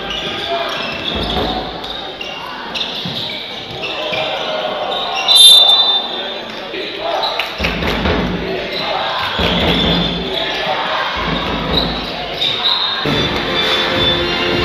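Live basketball game sound in an arena: a ball dribbling on the hardwood court amid voices, with a short high whistle blast about five seconds in.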